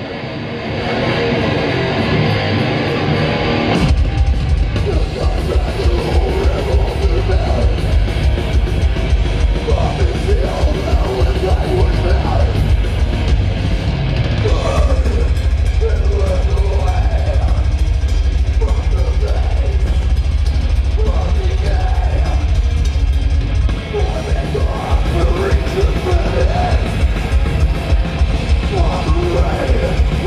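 Death metal band playing live, loud and distorted. The opening riff plays for about four seconds without the low end, then drums and bass come in heavily and the full band plays on, with vocals over it.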